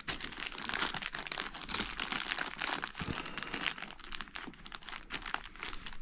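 Clear plastic accessory bag crinkling and crackling as it is handled, in an irregular run of small crackles.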